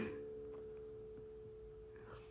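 A faint steady tone at one pitch, with a few weaker lower tones under it, slowly fading away.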